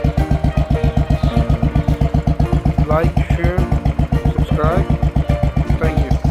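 Royal Enfield Classic 500's single-cylinder four-stroke engine idling with a steady, even thump after its new clutch cable has been fitted.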